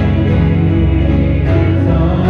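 Live band music led by an acoustic guitar, with a steady bass line underneath.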